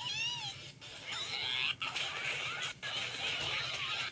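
Cartoon soundtrack heard through a TV speaker: high, wavering squeals and cries with noisy commotion in between.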